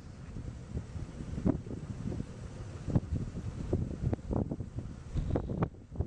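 Wind gusting across the camera microphone: an uneven low rumble that surges and drops irregularly.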